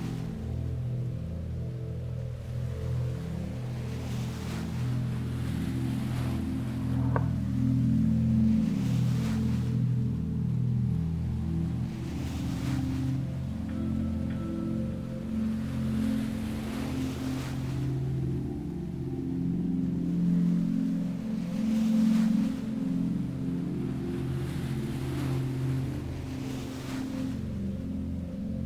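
Ambient music: a sustained low drone with washes of ocean surf swelling every two to three seconds. A brief rising tone sounds about seven seconds in.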